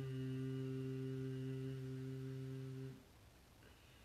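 A woman's voice holding the closing hummed 'mmm' of a chanted Om (Aum), one steady note that stops about three seconds in.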